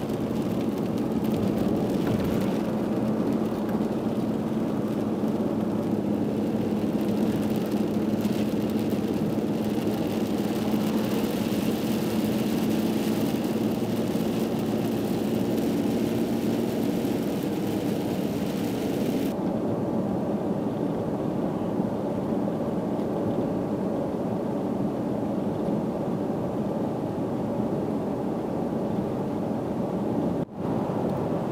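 Steady car road noise heard inside the cabin: engine and tyres on a wet highway. There is a low hum and a high hiss, and the hiss cuts off abruptly about two-thirds of the way through.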